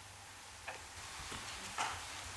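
Quiet room tone with a steady hiss and low hum, broken by two faint clicks, one well before halfway and one near the end.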